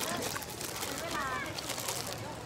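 Shallow stream water splashing and trickling over rocks, churned by a crowd of fish jostling at the surface for food. A short pitched call, a voice or a bird, sounds faintly about a second in.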